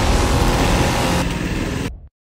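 Small go-kart engines running steadily, then cutting off abruptly at the end.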